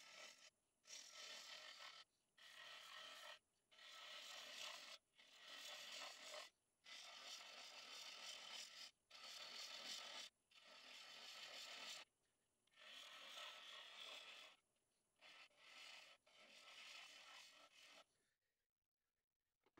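Turning gouge cutting a spinning cherry wood blank on a lathe: a dozen or so scraping cuts, each one to two seconds long, with short pauses between passes as the tool is lifted and re-presented.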